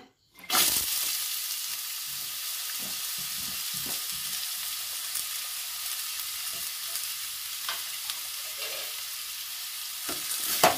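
Sliced onions frying in hot oil in an aluminium pot, a steady sizzle that starts sharply about half a second in as they hit the oil.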